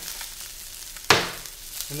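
Halibut fillet sizzling steadily in oil in a hot sauté pan, with one sharp knock about a second in, the loudest sound.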